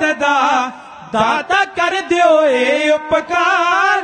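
Dhadi folk music: a wavering sarangi melody and chanted singing, punctuated by dhad drum strokes.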